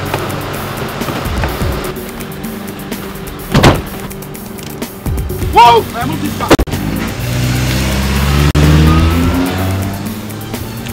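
Two car-door thumps a few seconds apart, then a Nissan Murano SUV's engine revs up with rising pitch as the vehicle pulls away, over background film music.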